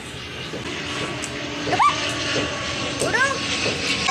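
Twin-engine turboprop airliner flying low overhead, a steady drone that grows louder. Children call out briefly over it.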